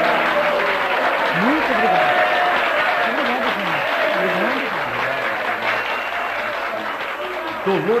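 Live audience applauding after a song, with voices mixed into the clapping; the applause thins out near the end as a man starts speaking.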